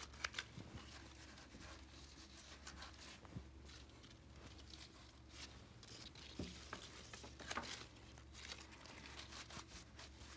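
Faint rustling and crinkling of rose stems and leafy foliage being handled and pushed into a flower arrangement, with a few soft clicks, over a low steady hum.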